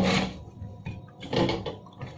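Kitchen knife cutting into a whole apple on a plastic cutting board.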